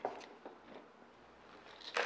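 A few faint clicks and rustles of a clear plastic plant pot filled with chunky potting mix being handled over a ceramic bowl, with a slightly louder rustle near the end.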